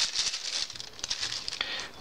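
Thin clear plastic packaging bag crinkling and rustling in the hands as a silicone phone case is pulled out of it, dying down toward the end.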